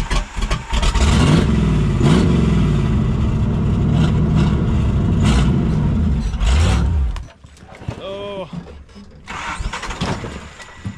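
Off-road TJ Jeep Wrangler's engine running hard under load as it climbs a steep rock ledge, the revs rising and falling, then dropping away suddenly about seven seconds in.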